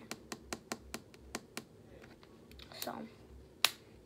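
Fingernails tapping rapidly on a wooden tabletop, a quick run of about nine clicks at some five a second, then one sharper click near the end.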